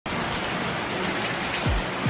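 Heavy rain pouring steadily, a dense even hiss. Deep, falling bass beats from a music track come in near the end.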